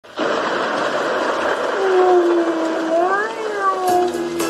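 Steady hiss of rain, with a long wavering howl joining it about two seconds in, rising briefly near the end and then falling away.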